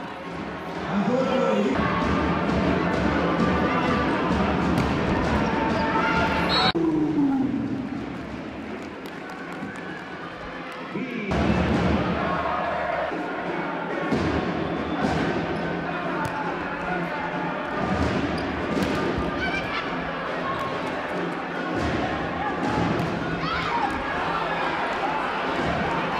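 Indoor volleyball arena sound: crowd noise and voices, with sharp thuds of the volleyball being struck during play. The sound changes abruptly a few times, at edits between clips.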